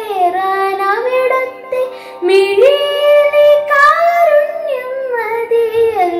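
A girl singing a Malayalam devotional song solo, holding long notes that slide and turn between pitches, with a brief break about two seconds in.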